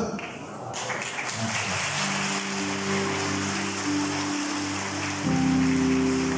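A congregation clapping, with music of long held chords coming in about two seconds in and moving to a new chord near the end.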